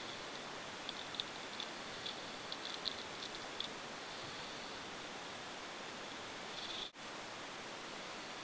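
Steady hiss of a camera's microphone noise floor, with a run of short, faint, high chirps or ticks in the first few seconds and again just before a brief dropout near the end.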